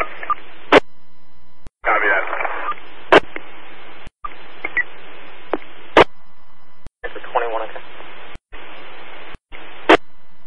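Two-way fire radio traffic picked up on a scanner: squelch hiss that keys on and off in blocks several times, with sharp keying clicks about every three seconds and brief garbled voice fragments, once about two seconds in and again past the middle.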